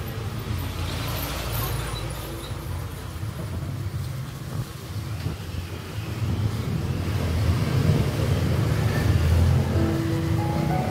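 Low rumble of road traffic that swells in the second half as a vehicle passes.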